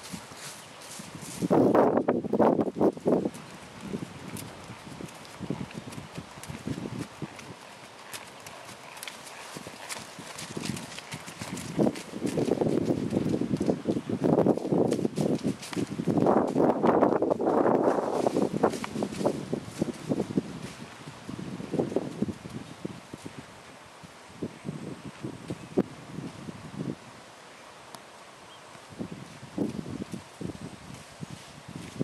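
Hoofbeats of a ridden horse moving around on grass and soft dirt, a run of dull thuds that grows louder as the horse passes close, briefly about two seconds in and again for several seconds in the middle.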